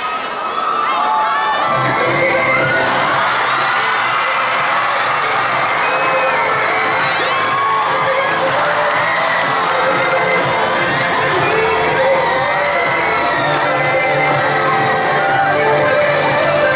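A hall full of students shrieking and cheering without let-up, many high voices overlapping, with music with a steady beat underneath.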